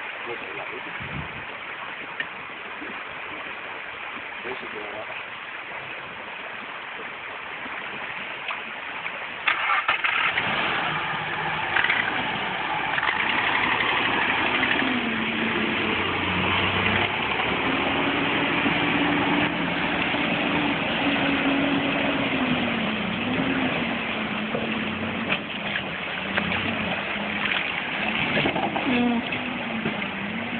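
Nissan Pathfinder engine cranked and catching about ten seconds in, then running steadily, its pitch rising and falling with the throttle.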